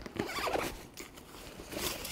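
Rustling and scraping from a collapsible 5-in-1 photography reflector being fetched and handled, with a louder crisp rustle near the end.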